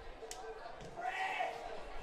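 Faint football-ground ambience: distant voices about a second in, and a single sharp knock about a third of a second in.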